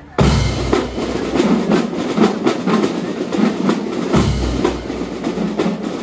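A school drum and lyre corps plays in full: snare and bass drums with bell lyres in a dense, rhythmic march beat. It comes in together just after the start, with heavy bass drum hits that return about four seconds in.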